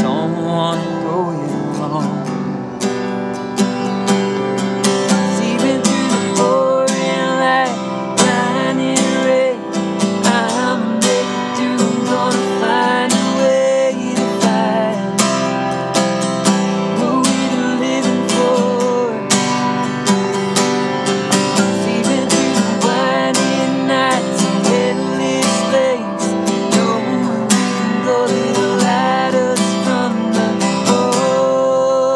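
An acoustic guitar strummed steadily through a live acoustic song, with a wordless vocal melody gliding above it.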